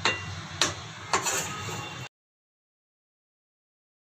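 A metal spatula knocking and scraping against a metal kadhai while stirring a thick, dough-like barfi mixture: three sharp clinks in the first second or so, over a low steady hum. The sound cuts off abruptly about halfway through.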